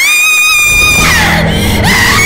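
A sudden high scream that rises and then holds for about a second. It is followed by several more screams and shouts over dramatic film music with a low, sustained drone.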